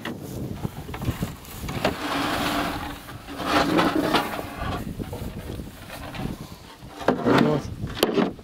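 Indistinct men's voices in short bursts, with occasional knocks and scrapes of corrugated asbestos-cement roofing sheets being unloaded and laid down on grass.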